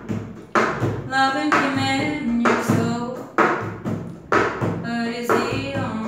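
A woman singing a pop song while keeping a cup song rhythm with her hands: claps, and a cup knocked and slapped on a wooden tabletop. The sharp hits land about once a second, with lighter taps between them.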